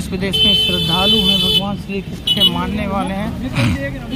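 Street traffic with voices talking, and a vehicle horn sounding a steady note held for about a second near the start, then a short toot about two seconds in.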